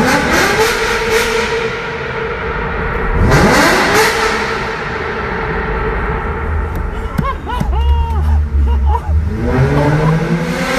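Mercedes S600's V12 through a loud aftermarket exhaust, heard from inside the cabin, revving hard: it climbs quickly in pitch and holds, drops and climbs again about three seconds in, then starts a third climb near the end.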